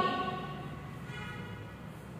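A bell's ringing tone, struck just before, fading away over the first half-second, with a fainter ringing tone returning about a second in.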